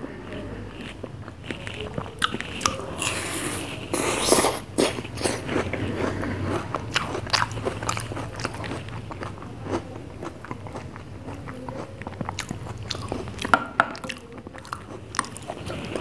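Close-miked mouth sounds of a person eating ice cream falooda from a spoon: wet bites and chewing, with many short sharp clicks and a louder, busier stretch about four seconds in.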